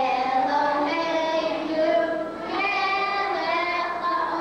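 Young boys singing together into a microphone, holding long sung notes, with a short break for breath about two and a half seconds in.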